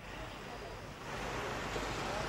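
Steady rushing outdoor background noise, wind and street hiss on a live field microphone. It cuts in suddenly and grows a little louder about a second in.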